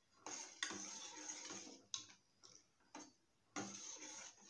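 A metal spoon stirring liquid in a steel pot, scraping and clicking against the pot in irregular strokes.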